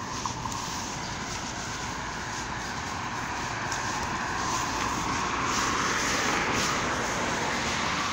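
Road traffic on a multi-lane street, a steady noise that swells as a vehicle passes about five seconds in.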